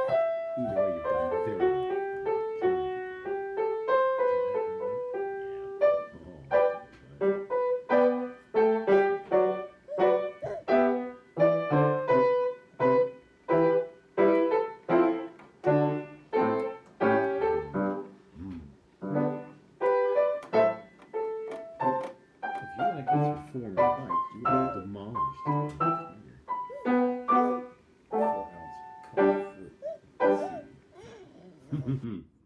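Solo piano improvisation: connected, sustained notes at first, then from about six seconds in a run of short, separated chords and notes.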